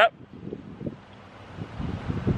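Faint outdoor background with light wind rumbling on the microphone.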